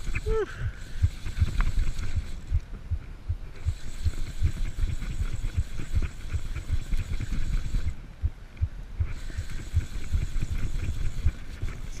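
Wind buffeting an action camera's microphone, heard as an uneven low rumble with frequent soft thumps, while a fly angler fights a hooked tarpon. A man gives a short excited "woo" right at the start.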